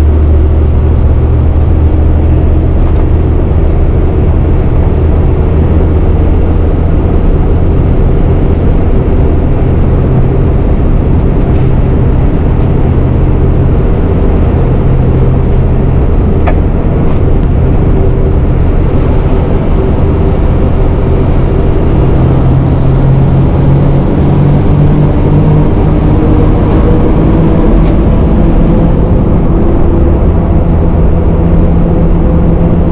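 MAN 4x4 truck's diesel engine running steadily as the truck drives along the road, a loud continuous low drone; the engine note climbs gradually in the last third as it picks up speed.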